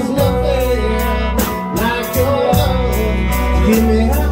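Live band playing a slow blues ballad: electric guitar, keyboard, bass guitar and drums keeping an even beat, with pitched lines bending in the middle register from the guitar and a male voice.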